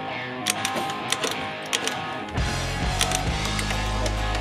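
Guitar music, with a 50 cc scooter engine being kick-started underneath. About two and a half seconds in, a few knocks come as the engine catches, then it runs with a low steady hum.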